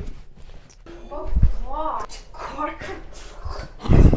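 A person's voice in a dark, quiet room, making several short high-pitched sounds that rise and fall, between about one and three seconds in.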